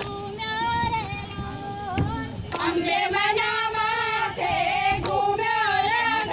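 A high voice singing a Gujarati garba song in long held notes with a slight waver, over music.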